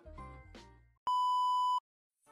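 Background music trailing off in the first second, then a single steady electronic beep lasting under a second that starts and cuts off abruptly.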